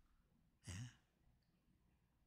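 Near silence, broken about two-thirds of a second in by one brief, soft spoken word from a man: "ne" (Korean for "yes").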